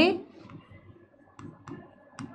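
A few light, sharp clicks of a pen tapping on a smartboard's screen during handwriting, spaced out in the second half.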